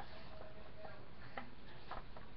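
Sheet of paper being handled and turned: two short crisp clicks, about half a second apart in the second half, over steady background hiss.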